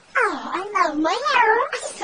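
A voice run through a phone voice-changer effect makes a string of about four wordless sounds, each with its pitch swinging up and down in smooth waves.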